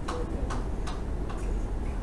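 About five light, sharp clicks at uneven intervals over a steady low hum.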